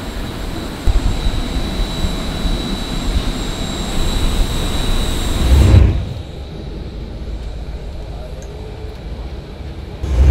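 Jet aircraft noise on an airport apron: a loud steady roar with a thin high whine over it, which swells and then cuts off about six seconds in. A quieter steady rumble follows.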